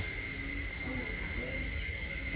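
Quiet field ambience: a steady, thin, high-pitched insect drone, typical of crickets, over a low rumble of wind on the microphone.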